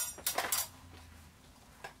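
Handling clicks from the large buckle of a wide Dolce & Gabbana belt as it is put on at the waist: one sharp click at the start, then a few fainter clicks and rustles within the first half second.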